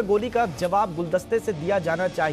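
Speech only: a man's voice talking without a break.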